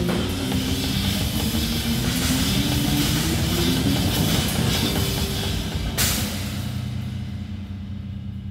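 Live rock drumming on a Tama kit with Meinl cymbals, played fast and hard over a bass guitar line. The passage ends on a loud final crash about six seconds in, and the cymbals ring out and fade.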